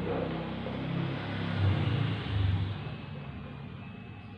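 A man's low voice, murmured and drawn out, loudest about halfway through and fading away after about three seconds.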